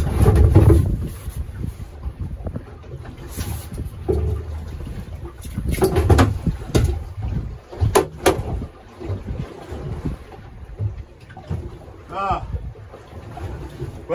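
Gusty wind buffeting the microphone on a small open boat in choppy water, loudest in the first second, with a few sharp knocks about eight seconds in.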